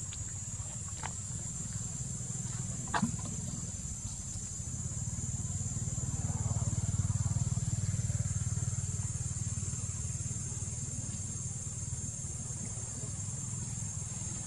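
Outdoor ambience: a low rumble that swells and fades again around the middle, over a steady high-pitched drone. A single sharp click about three seconds in.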